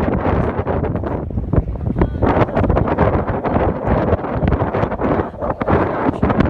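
Wind buffeting the microphone: a loud, continuous rushing rumble with gusty crackles throughout.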